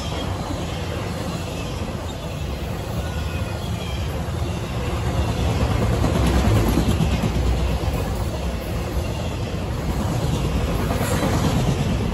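Intermodal freight train's flatcars loaded with trailers and containers rolling past, steel wheels running steadily on the rails; the sound grows louder about six seconds in.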